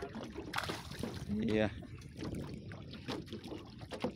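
A hooked fish splashing at the surface beside a small aluminium boat, with a few knocks about half a second in and a short shout about a second and a half in.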